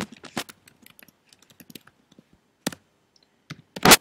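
Typing on a computer keyboard: a quick run of keystrokes at the start, scattered light key taps through the middle, and a few sharp keystrokes near the end, the last the loudest.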